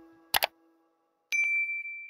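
A held note from the intro music fades out, then a short mouse-click sound effect. After a moment of silence comes a single bright notification-bell ding that rings on steadily.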